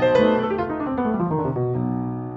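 Instrumental music: a piano plays a descending run of notes that settles onto a held chord near the end.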